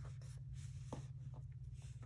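A hand sliding across a tabletop and taking up a deck of tarot cards: soft brushing and rubbing with a few light taps, over a steady low hum.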